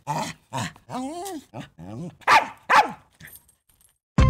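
Small dog barking, about seven short barks with a drawn-out, wavering yelp in between, stopping about three seconds in.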